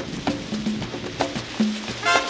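Latin dance-band percussion playing alone at the start of a tropical track: short sharp knocks and brief pitched drum strokes in a syncopated rhythm, with no other instruments or voice.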